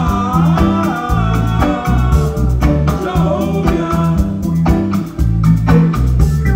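Live reggae band playing: a deep, stepping bass line and drums on a steady beat, with a wavering melodic lead line above them.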